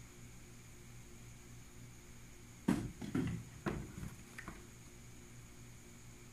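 A handful of sharp knocks and clatters of plastic enclosures being handled, clustered over about two seconds in the middle, against a steady low hum.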